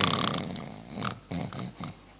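A man imitating a loud snore with his voice: one long rasping breath that fades over about a second, then three short rasps.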